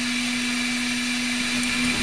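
Dremel Digilab 3D45 3D printer's fans running with a steady whir and a constant hum while the nozzle preheats.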